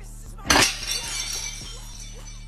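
A plate smashing on a tile floor: one sharp crash about half a second in, then pieces scattering and clinking for about a second.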